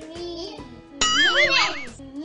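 A loud bell-like ding with a wobbling, warbling pitch strikes about a second in and rings for just under a second, over a child's voice.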